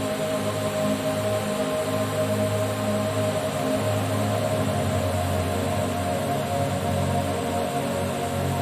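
Slow ambient background music: long held tones over a low drone that swells and fades, with a steady soft hiss beneath.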